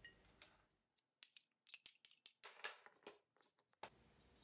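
Blueberries and pomegranate seeds dropping into a glass swing-top bottle: an irregular run of light clicks and taps against the glass, starting about a second in and stopping shortly before the end.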